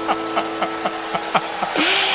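A man laughing into a microphone in a long run of short, rhythmic "ha" bursts, about four or five a second, a slow maniacal laugh. Under it a steady low hum of two held notes stops near the end.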